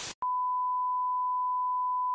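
A brief burst of TV-static hiss stops just after the start. It is followed by a steady 1 kHz test-pattern tone, the reference beep played with colour bars.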